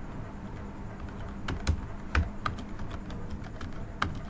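Computer keyboard being typed on: a run of irregular key clicks, bunched mostly in the middle and later part.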